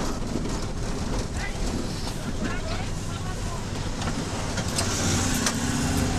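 A car running steadily, heard from inside the cabin as it drives slowly along a street, with engine and road noise and a brief louder hiss about five seconds in.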